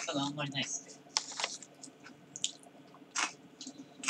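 A short stretch of low voice at the start, then about five soft, sharp clicks and taps spread unevenly over the rest.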